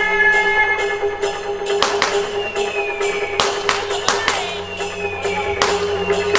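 Music with a steady held droning note, falling sliding tones and sharp irregular percussive strikes.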